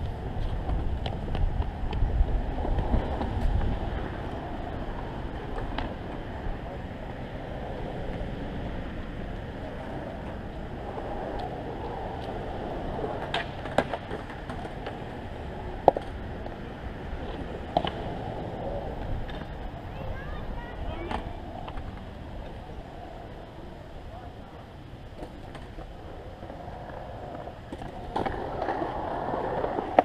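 Skateboard wheels rolling on concrete with a low rumble, loudest early on and again near the end, broken by a few sharp clacks of boards hitting the concrete and ledge.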